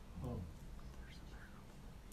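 A man's short, low 'hmm' just after the start, then a quiet pause with a faint low hum and a soft breathy sound.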